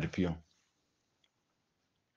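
The end of a man's spoken phrase about half a second in, then near silence: room tone.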